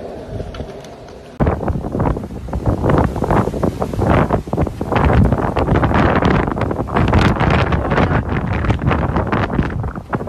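Heavy wind buffeting a phone microphone, starting abruptly about a second and a half in and staying loud and gusty.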